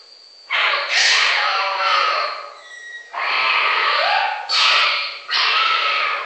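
A string of rough animal calls, each about a second long, coming one after another with short gaps. One call near the middle ends in a short rising tone.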